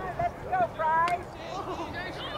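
Several voices shouting and calling out across an open field, short high-pitched calls overlapping, the loudest held call about a second in, with a sharp click just before it.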